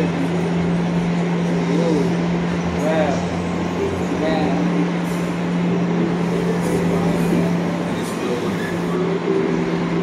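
City street background noise with a steady low hum and distant, indistinct voices.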